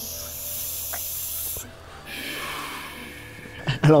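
A person breathing in and out through the mouth in two long hissing breaths, with a short gap between them, mimicking a drag on a cigarette and the exhale of smoke.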